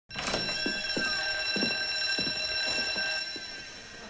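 A steady high ringing tone of the alarm or buzzer kind, made of several held pitches, fading out near the end. About eight soft thuds come irregularly beneath it.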